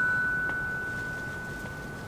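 A single high glockenspiel note ringing on after it was struck, a pure metallic tone slowly fading away.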